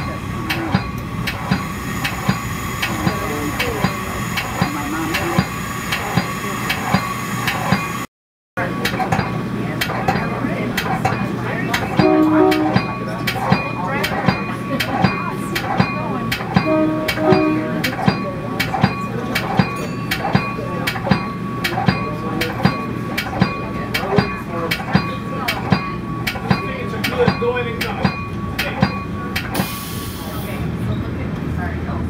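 Metra commuter train heard from its cab car while running, with a steady low hum and a string of regular sharp clicks from the wheels over the rails. Two brief pitched tones sound about twelve and seventeen seconds in, and the sound cuts out for half a second just after eight seconds.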